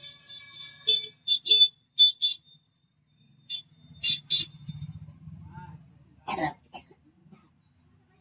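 Hair-cutting scissors snipping through wet hair: a run of short, sharp snips, in quick pairs and clusters about a second in and again around four seconds in.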